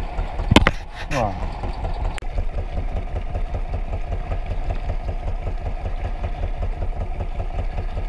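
A fishing boat's engine idling with a steady, rapid chugging throughout. A few sharp knocks come in the first two seconds.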